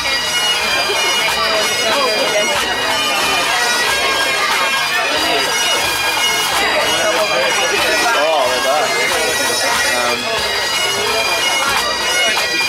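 Highland bagpipes playing continuously over their steady drones.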